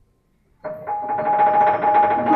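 Grand piano prepared with bolts, screws and rubber between its strings: silent for about half a second, then a loud cluster of struck notes starts suddenly and rings on, two tones held steady above it.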